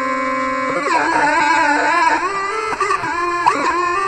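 Electronic tones from a modified, light-sensitive subwoofer instrument, played by hand and processed with Max/MSP autotuning. A held tone gives way, under a second in, to several voices that slide and waver in pitch.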